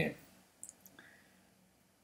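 The tail of a man's word, then near silence with two faint short clicks about half a second and a second in.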